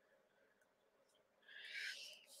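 Near silence: room tone, with one brief soft hiss-like noise near the end.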